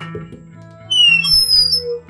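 A loud, high whistle cuts in about a second in, jumping up in pitch and then sliding down, over a band's electric guitar and bass playing softly.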